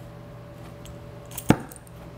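Oxy-acetylene cutting torch being lit: one sharp snap about one and a half seconds in as the acetylene catches, over a steady low hum.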